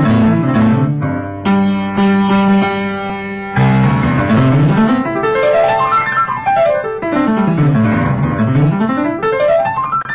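Grand piano played in the Burmese sandaya style. Chords and a held chord with repeated notes come first, then rapid scale runs sweep down and up the keyboard again and again.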